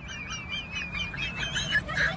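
Small birds chirping and twittering, many quick overlapping calls with a wavering whistle running through.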